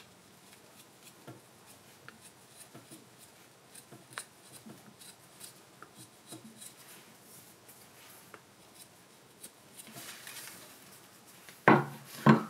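Faint, intermittent small cuts and scrapes of a hand carving gouge paring the bowl of a wooden spoon, then a loud knock near the end as the tool is set down on a wooden block.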